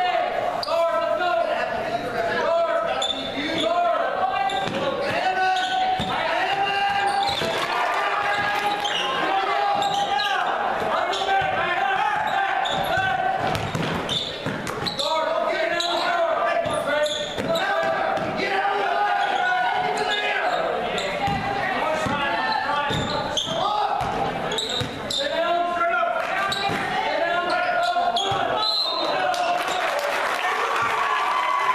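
Basketball bouncing on a hardwood gym floor during play, under steady calling and shouting from spectators and cheerleaders, echoing in the gym.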